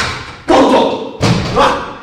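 Broom and plastic dustpan being knocked about. There is a sharp knock at the start, then two loud thuds about half a second and a second in, and a lighter knock soon after.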